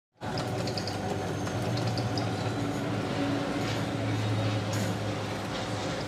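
Benchtop drill press running with a steady low motor hum while its bit bores tuner-post holes through a guitar headstock.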